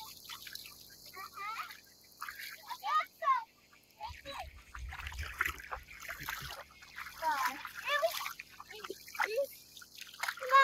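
Feet wading and splashing through shallow water, with scattered short, high, gliding calls over it and a brief low rumble about halfway through.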